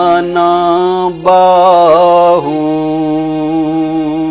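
A man singing a Punjabi folk song, drawing out long held notes with a slight waver and stepping down to a lower note about halfway through, with keyboard accompaniment.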